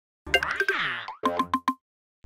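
Cartoon-style sound-effect jingle for an animated channel intro: a springy boing with a falling pitch glide, then four quick short notes in a row.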